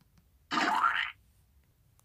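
A short cartoon sound effect with a rising pitch, about half a second long, starting about half a second in, marking a cupcake being thrown.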